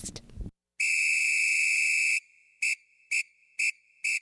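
A whistle: one long, steady blast, then a run of short blasts of the same pitch about half a second apart.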